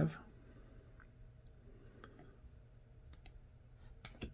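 Trading cards being handled and shuffled through a pack between fingers, giving a few faint, scattered clicks.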